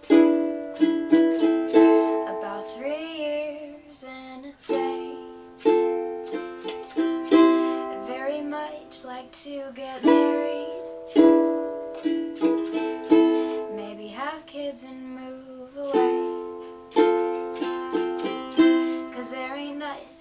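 Solo ukulele playing, chords strummed about once a second and left to ring and fade between strokes.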